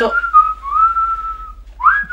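A man whistling a single wavering held note. It rises in at the start, stops about a second and a half in, then starts up again near the end.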